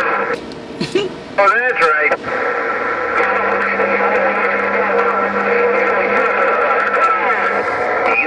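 Garbled, overlapping voices of distant stations coming through the President HR2510 radio's speaker on 27.085 MHz, thin and narrow-sounding. A burst of static hiss breaks in about half a second in, a warbling squeal follows around two seconds, and a low steady tone runs under the voices from about three seconds until near the end.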